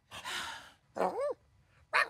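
A long, breathy sigh of disappointment, followed about a second in by a short voiced sound whose pitch rises and falls.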